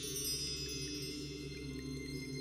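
Closing music of chimes: a shimmer of many high ringing tones slowly fading over a low steady drone.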